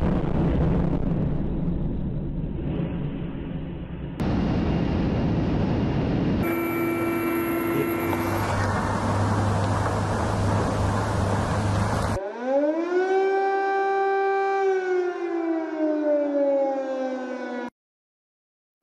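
Air-raid siren winding up quickly, holding a steady wail, then winding down slowly before cutting off. Before it come about twelve seconds of loud, rough rushing noise from explosion and fire footage, spliced together with several abrupt cuts.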